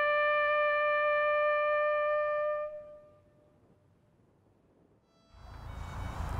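A solo brass instrument, a trumpet or bugle, holds the last long note of a call and fades out about three seconds in. Near the end a low, rumbling background noise comes up.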